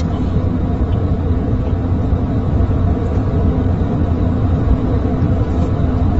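A steady low rumble with a fainter hiss over it, unbroken and without speech.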